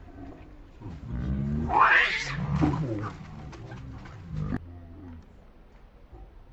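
Pig-tailed macaque screaming: a loud cry from about one to three seconds in that rises sharply in pitch, followed by a shorter call about four and a half seconds in.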